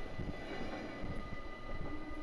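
Intercity train rolling past on the track, a faint low rumble with irregular low knocks from the wheels.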